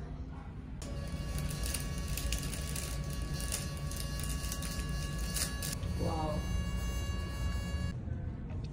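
Soft background music of held keyboard-like chords, starting about a second in, with the chord changing a little past halfway. A short rising vocal sound comes near the end.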